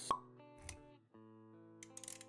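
Quiet intro music for an animated logo, with a sharp pop sound effect right at the start and a softer hit about two-thirds of a second in. The music drops out briefly near one second, then carries on with sustained notes.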